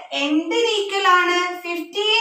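A woman's voice, drawn out in long, evenly pitched vowels, sing-song rather than clipped speech.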